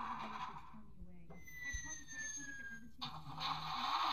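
Indistinct voice sounds with no clear words. A thin, faint high tone glides slightly downward in the middle.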